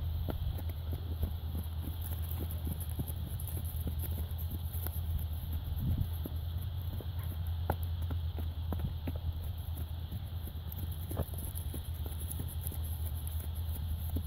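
Hoofbeats of a horse trotting on a lunge line over grass and dirt: a quick, uneven run of dull thuds, over a steady low hum.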